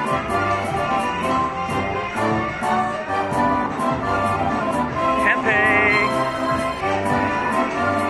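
Lightning Link High Stakes slot machine playing its win celebration music while the bonus win meter counts up. Light ticks repeat a few times a second, and a brief warbling tone sounds about five and a half seconds in.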